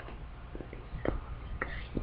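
Faint handling noise with a few light clicks as a clear plastic organizer box and the camera are moved about.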